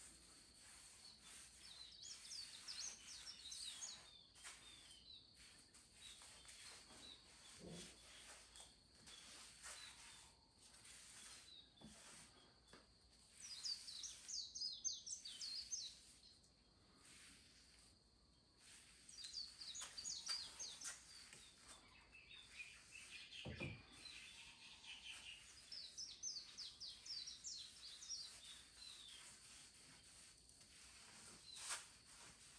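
Faint outdoor birdsong: several runs of quick, high chirping from small birds, each lasting a few seconds, with a lower trill about three quarters of the way through, over a faint steady hiss.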